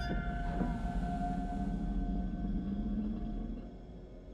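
Trailer score drone: a few steady held tones over a low rumble, fading away near the end.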